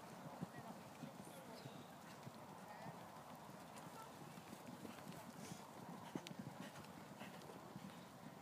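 Faint hoofbeats of a horse cantering over a sand arena.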